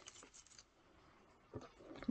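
Near silence: room tone, with a few faint, soft rustles of paper being handled, at the start and again about a second and a half in.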